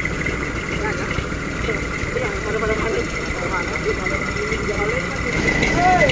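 Truck engines idling: a steady low rumble, with indistinct voices talking faintly and a constant high-pitched whine throughout.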